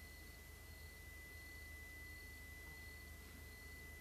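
Near silence: room tone with a faint, steady high-pitched tone and a low hum.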